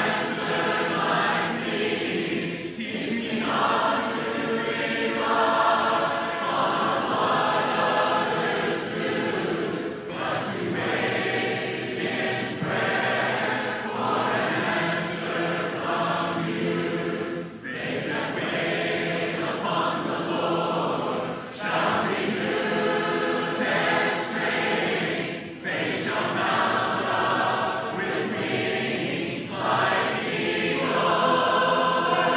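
A choir singing a hymn in long, sustained phrases, with brief breaks between phrases.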